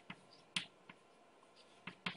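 A few faint, sharp clicks in a quiet room, the clearest just over half a second in.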